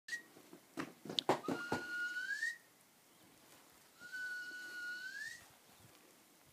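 A person whistling two long held notes, each gliding upward at its end, with a pause between them. A few sharp clicks come just before the first note.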